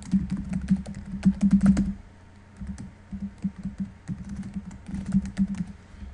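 Typing on a computer keyboard: quick runs of key clicks, densest in the first two seconds, then sparser with short pauses.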